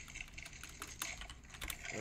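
Computer keyboard being typed on: a few irregular, separate key clicks.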